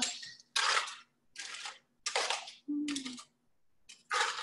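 Aluminium foil pouch being pulled open and crinkled by hand, in four or five short bursts.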